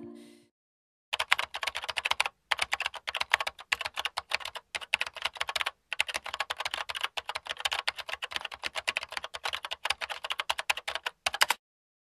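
Rapid computer keyboard typing, a fast run of keystroke clicks broken by a few brief pauses, stopping shortly before the end. Music fades out in the first half second.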